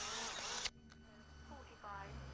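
Polaroid instant camera's motor ejecting the print: a steady whir that cuts off suddenly under a second in.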